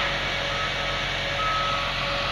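John Deere 750L crawler dozer running steadily, with a high tone that sounds in short stretches, the beeping of its back-up alarm.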